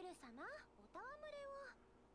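Faint, high-pitched female voice speaking Japanese in the anime soundtrack, in two short phrases whose pitch swoops up and down.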